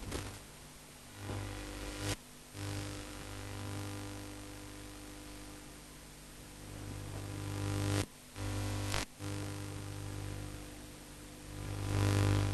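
Steady electrical hum in the recording, a low buzz with higher overtones held at one pitch. It cuts out briefly about two seconds in and twice near eight to nine seconds.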